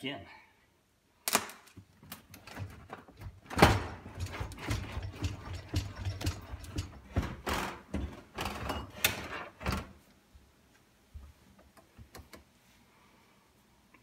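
A built-in dishwasher being pulled out of its cabinet opening. There is one sharp knock near the start, then a run of knocks, bumps and scraping that lasts about six seconds, with the loudest bump about four seconds in.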